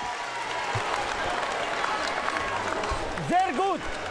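Arena crowd applause and crowd noise as a boxing round ends, an even hiss-like din; near the end a voice starts speaking over it.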